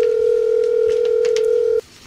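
Telephone ringing tone heard on the caller's end, a call ringing through before it is picked up: one steady low beep lasting nearly two seconds that cuts off abruptly.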